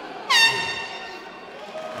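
An end-of-round horn sounds once, about a third of a second in: one sharp, high tone that fades away over about a second in the hall's echo, signalling the end of the round.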